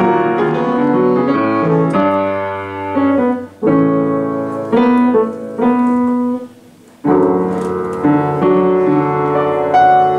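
Upright piano being played, a flowing passage of notes and chords. The playing breaks off a little past six seconds in, and another passage begins about half a second later.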